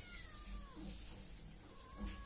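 Kitten meowing faintly: two thin, drawn-out meows, the first falling in pitch at the start and a second, steadier one near the end.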